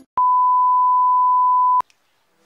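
A steady electronic beep: one pure high-pitched tone held for about a second and a half, switched on and off abruptly with a click at each end.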